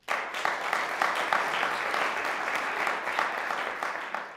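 Audience applause breaking out suddenly as the piece ends, a dense, steady patter of many hands clapping.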